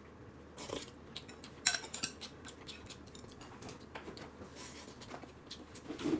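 Chopsticks clicking and tapping against porcelain bowls and a plate, a few light scattered clicks at a quiet meal.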